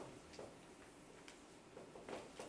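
Dry-erase marker writing on a whiteboard: a few faint, short taps and strokes.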